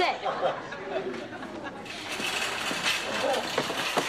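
People talking, indistinct voices and chatter.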